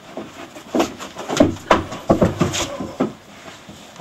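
A scuffle in which one person wrestles another to the ground: a run of thumps and scuffling with grunts, loudest in the middle.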